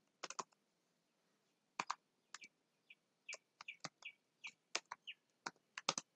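Typing on a computer keyboard: irregular faint keystroke clicks, some in quick pairs, with short high-pitched chirps mixed in among them.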